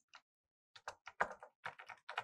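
Computer keyboard typing: one light keystroke near the start, then a quick run of about eight key clicks from about a second in.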